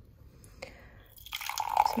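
Lightly carbonated chinotto soda pouring from an aluminium can into a glass, beginning about a second and a half in and fizzing as it foams up.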